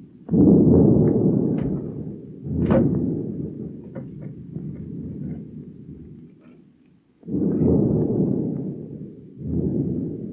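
Four loud booms, each starting suddenly and dying away in a low rumble over one to two seconds, the last two close together near the end.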